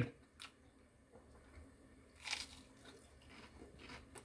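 A person biting crunchy toast close to the microphone: a faint click about half a second in, then one short crunch a little past the middle.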